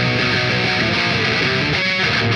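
Electric guitar played through a Marshall Silver Jubilee valve amp with heavy distortion: a riff of picked notes that keeps moving in pitch.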